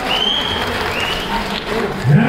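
Audience applauding, an even clatter of many hands, with two short high-pitched calls rising over it near the start and about a second in.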